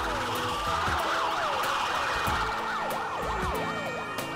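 Several sirens wailing over one another, their pitch sweeping up and down, layered over a steady low beat.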